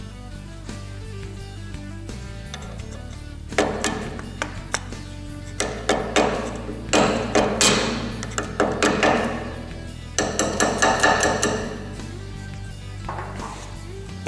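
Background music playing, with light metal taps and clicks from about three and a half seconds in as a hand tool works a steel keyway into an outboard driveshaft.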